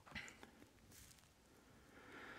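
Near silence, with a couple of faint, brief rustles.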